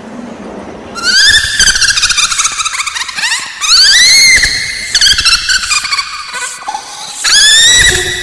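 Loud, high-pitched squealing cries that rise in pitch, several in a row, starting about a second in.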